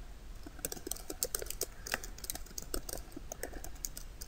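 Computer keyboard being typed on: a quick, irregular run of light key clicks.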